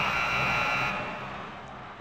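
A game-clock buzzer sounds for about a second as the bumper's countdown clock reaches zero, over the end of the show's music, which then fades out.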